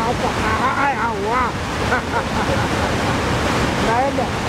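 Loud, steady rush of a muddy river in flood. Voices call out over it in the first two seconds.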